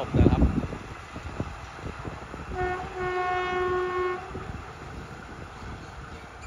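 Horn of the GE diesel-electric locomotive GEK 4005, heard from a distance as its train moves away: a short toot, then a longer blast of about a second. A brief low rumble is heard near the start, and the train's running gives faint scattered clicks.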